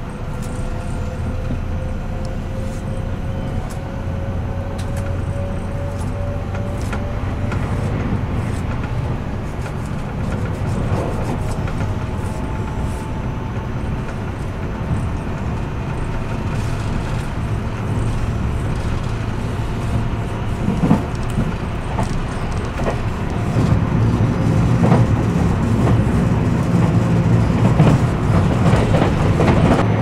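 Electric commuter train running, heard from inside the carriage: a steady low rumble with a faint rising motor whine over the first several seconds. A few clacks come over the rail joints, and the running noise grows louder toward the end.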